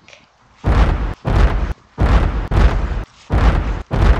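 Giant-footstep sound effect: about six heavy, deep booming stomps, one every half second or so.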